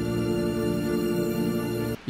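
Intro music: one steady held chord of sustained tones, without a beat.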